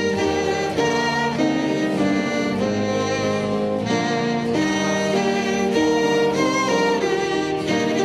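Instrumental music: a slow hymn tune played as the introduction before the congregation sings, with sustained chords that change every second or so.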